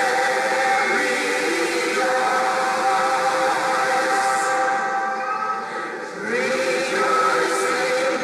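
Mixed church choir singing held chords, with a brief pause in the singing about five seconds in before a new phrase starts about a second later.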